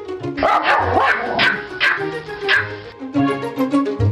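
A dog barks about six times in quick succession over two seconds, with the music dropping out beneath it. The music comes back after the barks.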